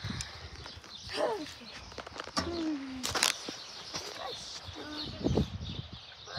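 Phone camera being handled and moved about, giving a few knocks and rustles, the sharpest about three seconds in and a duller thump about five seconds in.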